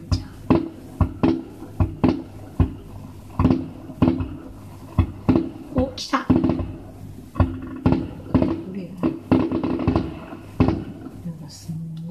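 Aerial fireworks bursting: a rapid, irregular run of sharp bangs, roughly two a second.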